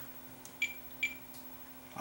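Two short, high beeps about half a second apart from a Fluke digital multimeter, each with a small click, as its test probe touches the contacts of a cable plug during a continuity check.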